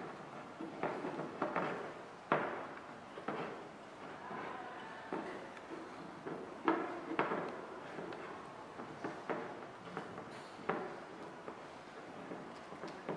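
Handling noise: irregular light knocks and taps as a glass bottle is handled on a tabletop while string is fitted around it.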